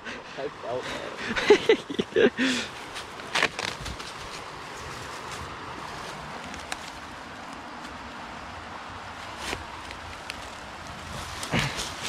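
Hands digging through dry leaf litter and soil: scattered rustling and scraping over a steady low hiss, with brief bits of voice in the first few seconds.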